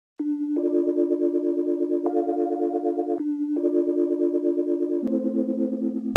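Intro of an electronic instrumental: sustained synthesizer chords with a fast, even pulse and no drums, moving to a new chord every second or so.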